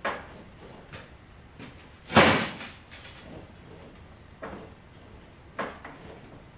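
Racing lawnmower's welded steel frame pushed down by hand onto its rear shock, clunking and rattling with each push: a few knocks, the loudest about two seconds in. The shock is a little soft.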